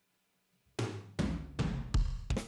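Sampled drum-kit hits from HALion 6's Big 80s Kit preset, triggered one at a time from the keyboard. Four single hits come in quick succession about 0.4 s apart, starting about three quarters of a second in, each ringing out briefly. The fourth hit is the sharpest and loudest.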